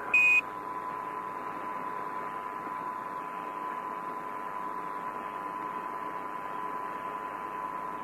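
A short single Quindar beep, about a quarter second long, just after the start, marking the end of a Mission Control transmission. It is followed by steady radio-link hiss with a faint constant tone running under it.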